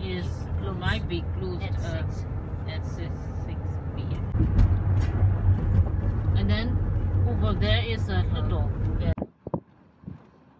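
People talking inside a moving Toyota car's cabin over a steady low engine and road rumble. The sound cuts off abruptly near the end.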